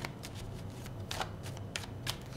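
A deck of tarot cards being shuffled by hand, the cards sliding and tapping together in a quick, irregular run of soft clicks.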